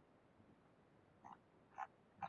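Near silence with two faint short clicks, about a second in and just before the end, from keys or buttons pressed at a computer to page through a document.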